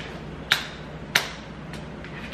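Two sharp metal clicks a little over half a second apart, then a fainter one, from the wire staple of a wooden snap mouse trap being lifted and handled.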